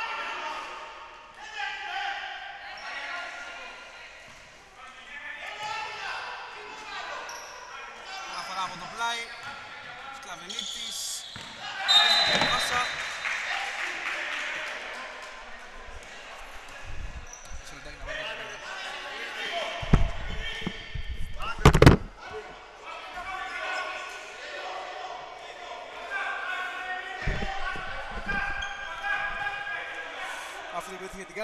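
Indoor basketball game: players' voices echo around a gym hall while a basketball bounces on the wooden court. There is a loud burst of voices about twelve seconds in, and heavy thuds of the ball around twenty and twenty-two seconds.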